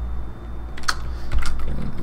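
Computer keyboard keystrokes: a quick run of about five key clicks starting a little under a second in, the first the loudest, over a steady low hum.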